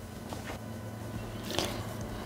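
Faint sound of a little water being poured from a glass into a Thermomix's stainless-steel mixing bowl, with a brief light handling noise about one and a half seconds in.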